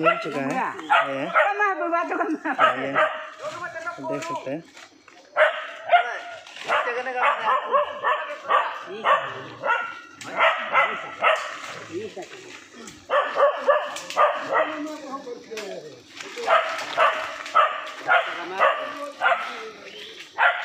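A dog barking in quick bouts of several barks, with short pauses between bouts, and people's voices along with it.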